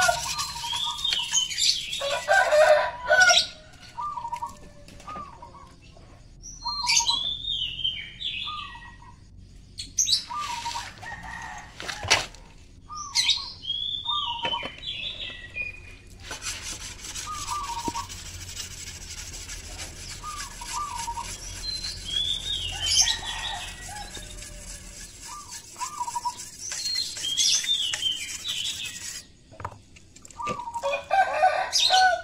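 Birds chirping in many short, repeated calls. In the first few seconds a steel sickle blade is rubbed on a sharpening stone.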